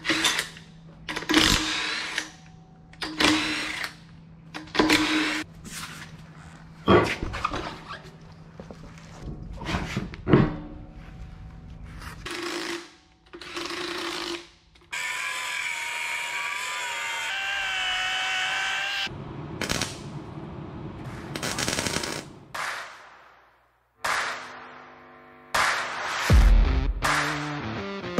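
Cordless impact wrench in repeated short bursts, undoing and running on the wheel nuts of a boat trailer's wheel hub as the old steel wheel is swapped for an alloy rim. Near the middle it runs for one longer stretch of about four seconds.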